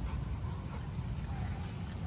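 Dogs on leashes sniffing and moving about on grass and dirt, with faint scattered clicks over a steady low rumble.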